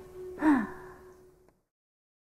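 A woman's laughter trailing off into one breathy, falling sigh about half a second in. Then the sound cuts off at about a second and a half.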